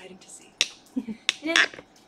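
Two sharp clicks about two-thirds of a second apart, with a brief voice sound around the second.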